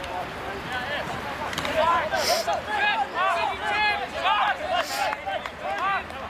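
Several male voices shouting short, overlapping calls across a rugby field during a tackle and ruck.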